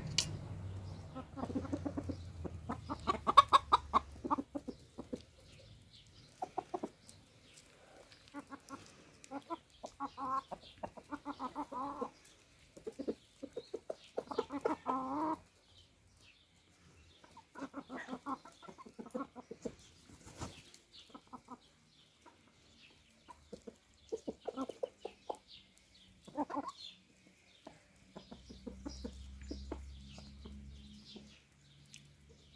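Domestic chickens clucking as they peck at food, in repeated runs of quick clucks with quieter stretches between.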